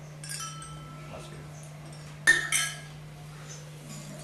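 Small metal spoon clinking against a metal water cup as the ritual sips of water are taken: a light clink about a quarter second in, then a sharp, louder clink that rings briefly a little after two seconds. A low steady hum runs underneath.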